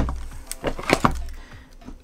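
Packing-tape dispenser being handled on a wooden workbench: a knock, then a few sharp clicks about half a second and a second in, over a low rumble that fades out after about a second and a half.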